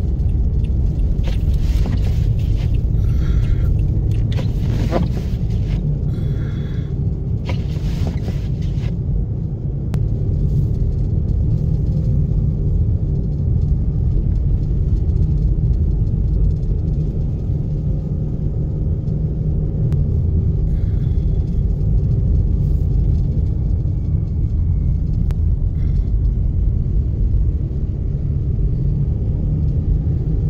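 Steady low rumble of a car driving on a snow-covered road, heard from inside the cabin.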